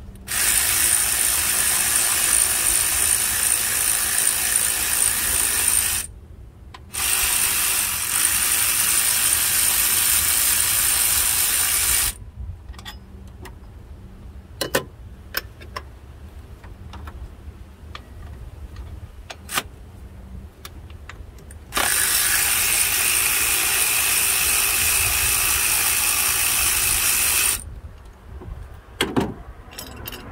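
Ratchet run steadily to undo the belt tensioner bolt on the water pump, in three long runs of about five seconds each that start and stop abruptly, with a few faint clicks between them.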